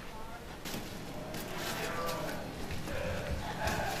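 Quiet, indistinct voices talking, with no clear words.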